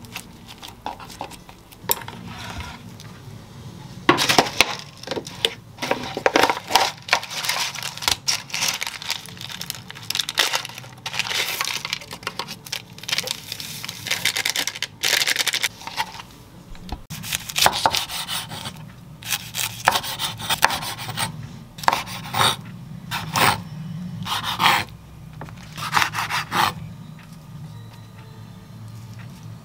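Kitchen food-prep sounds with no music: hands working a seaweed-wrapped gimbap roll on a wooden cutting board, a sachet emptied into a paper noodle cup, and a kitchen knife sawing through the gimbap onto the wooden board in repeated short strokes near the end.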